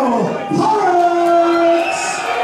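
Ring announcer's voice over the PA, drawing a boxer's name out into one long call: the pitch swoops down at the start, then holds steady for over a second.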